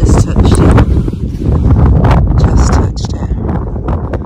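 Wind buffeting the microphone, a loud, uneven low rumble, with scattered light crackles over it.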